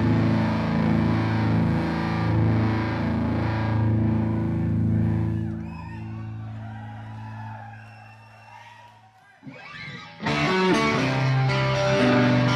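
Live rock band holding a sustained chord that dies away about five seconds in, leaving a few seconds of much quieter sound. About ten seconds in, a distorted electric guitar starts up abruptly with the band.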